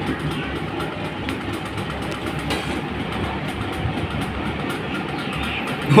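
Steady rushing background noise with no clear source and no speech.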